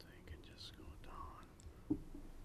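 Faint whispered talk in a meeting room, with one brief sharp knock just before the end.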